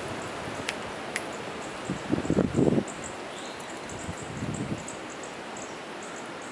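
Strong wind blowing through bare trees, a steady rush with gusts rumbling on the microphone about two seconds in and again near the end. Two sharp clicks come in the first second or so.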